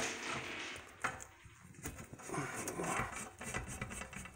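Screwdriver backing a small screw out of a metal TV wall-mount bracket: light scrapes and small clicks of metal on metal, with one sharper click about a second in.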